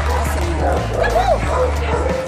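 Background music with a steady bass beat, and a dog yipping and whining over it in short rising-and-falling cries, one clear cry about a second in.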